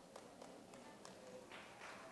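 Near silence: room tone of a large hall with a few faint taps.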